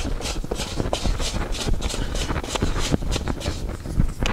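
Hands kneading and pressing a ball of dough on a floured wooden board, in an even rhythm of soft strokes, a few each second. The dough has reached the stage where it no longer sticks.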